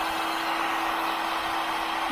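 Black & Decker heat gun running steadily: a rush of blown air over a constant motor hum, drying freshly sprayed caliper paint between coats.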